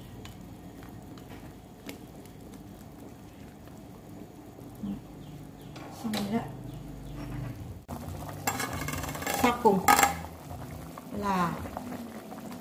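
Soup simmering in a stainless steel pot while chopsticks and a ladle stir it and knock against the pot. A low, steady simmer with light clicks runs for about eight seconds, then after a sudden cut there is louder stirring and clatter.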